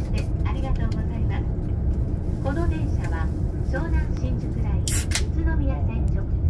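Steady low rumble of a JR Shonan-Shinjuku Line train running, heard from inside the Green Car, with voices over it. A short sharp noise comes about five seconds in.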